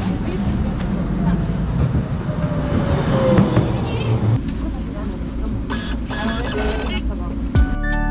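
Electric city tram pulling into a stop: a low rumble with a motor whine that falls in pitch as it slows. Background music comes in near the end.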